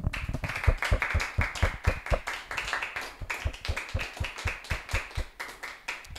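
Audience applauding: a dense run of hand claps that keeps up steadily and dies away at the very end.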